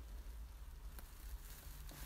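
Faint steady low hum of a quiet car cabin, with a single faint click about a second in.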